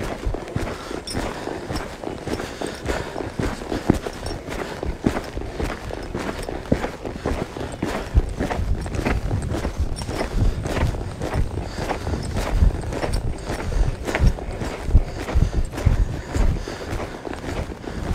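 Hoofbeats of a horse loping on a soft dirt arena, an even run of muffled thuds.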